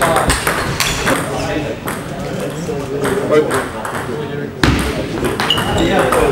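Table tennis balls clicking off bats and tables at irregular moments, with indistinct chatter of other people in the hall.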